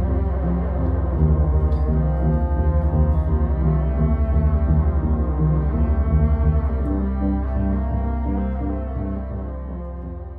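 Droning Moog synthesizer music: a deep, pulsing bass drone under slowly changing held notes, fading out gradually near the end.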